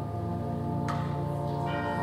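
Concert band holding sustained chords, with a single chime (tubular bell) struck about a second in and left to ring.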